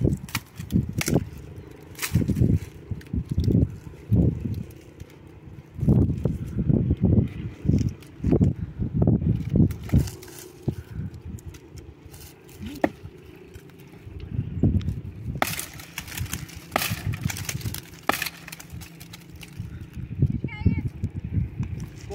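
Branches being snapped and pulled off a tree by hand: sharp cracks and twig rustling, with a dense run of cracks about two-thirds of the way through. Under them are repeated loud low thumps.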